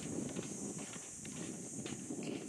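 Footsteps on a path, a few irregular knocks over a steady low rumble.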